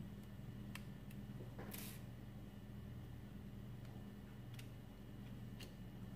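Faint small clicks and a brief scrape as a SIM ejector pin is pressed into a smartphone and its SIM/microSD tray slides out, over a steady low hum.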